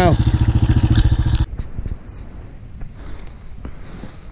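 Bombardier ATV engine idling with a fast, even putter, which cuts off abruptly about one and a half seconds in; after that only faint outdoor noise with a few small knocks.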